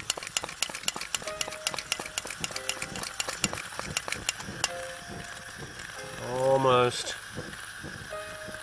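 Coleman Peak 1 Model 400 white-gas backpacking stove burning over a steady hiss, its flame crackling with rapid sharp ticks that thin out in the second half. It is still warming up, so it burns with tall yellow flames that settle once the stove heats. A brief hum of a man's voice comes near the end.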